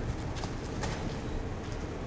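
Steady low room hum with two faint, sharp clicks, about half a second and about a second in.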